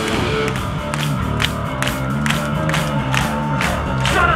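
Hardcore punk band playing live, holding low guitar and bass notes while the crowd claps in a steady rhythm and cheers.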